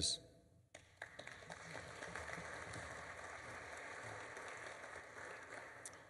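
Audience applauding, starting just under a second in and fading out near the end.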